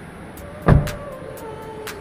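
A single loud thump about two-thirds of a second in, followed by a few held tones stepping down in pitch and light ticks.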